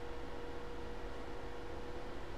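Low background hiss with a faint steady hum: room tone, with no distinct sound events.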